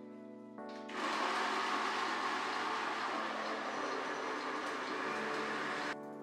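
Countertop blender starting about a second in and running steadily, blending chopped carrot and ginger with water into a pulp, then cutting off suddenly at the end. Background music plays underneath.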